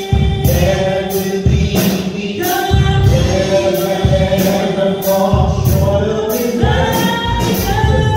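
Gospel vocal group of men's and women's voices singing sustained notes in harmony through microphones, over accompaniment with bass and a steady beat of high ticks a little under two a second.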